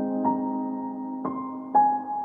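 Slow, soft piano music: sustained chords with a few new notes struck in turn, each ringing on and fading.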